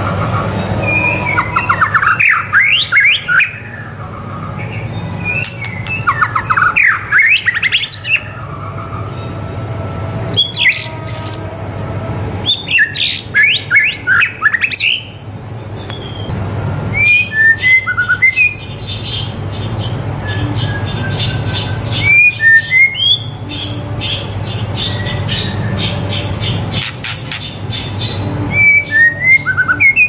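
White-rumped shama (murai batu) singing in full voice. It delivers a run of loud, varied phrases of quick rising and falling whistles and rapid trills, each a second or two long with short pauses between, over a steady low hum.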